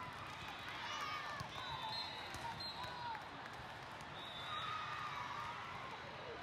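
Indoor volleyball being played in a large, echoing hall: sharp ball contacts and short squeaks, typical of court shoes, over the steady chatter of a crowd.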